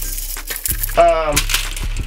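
Plastic bag crinkling and rustling as it is pulled off a small speaker, with handling clicks. A short vocal sound from the man comes about a second in.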